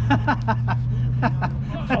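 A man laughing heartily: a quick run of short 'ha-ha' pulses, about five a second, fading out near the end. A steady low hum runs underneath.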